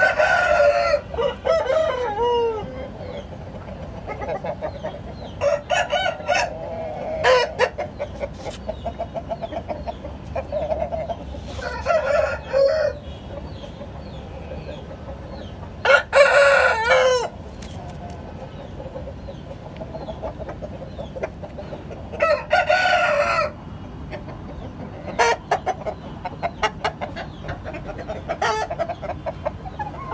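Aseel game rooster crowing again and again, each crow about a second long and coming every few seconds, the loudest about halfway through, with short clucks between.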